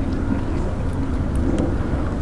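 Steady low rumbling background noise with no distinct event.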